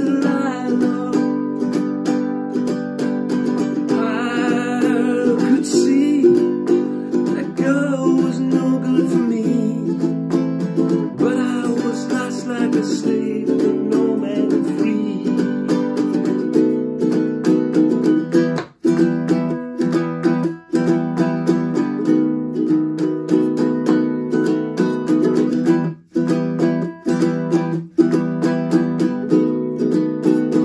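Ukulele strummed in steady chords, with a man's voice carrying the melody over it in the first half; from about halfway the ukulele plays alone, stopping dead for an instant four times.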